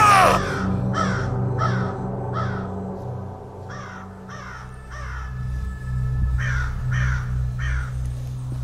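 A loud shout right at the start, then crows cawing: three runs of three harsh caws, over a steady low droning music score.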